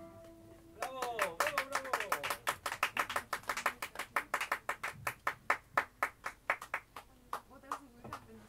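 Small audience clapping in a small room, quick close-set claps from about a second in that thin out near the end. A voice sounds over the first second of the clapping, and a guitar note rings out just before it starts.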